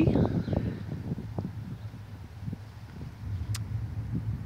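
Low rumbling wind and handling noise on the microphone, heaviest in the first second and then easing off, with one short click about three and a half seconds in.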